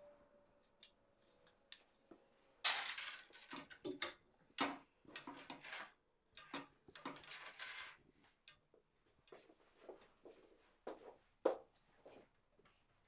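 Clothes and hangers being handled at a wardrobe: an irregular string of rustles and light knocks, starting about two and a half seconds in. A faint hum fades out before them.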